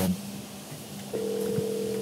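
Telephone ringback tone: one steady ring about a second long, starting about halfway in, as an outgoing call rings on the other end.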